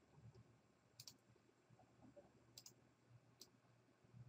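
Near silence with a few faint computer mouse clicks, some in quick pairs.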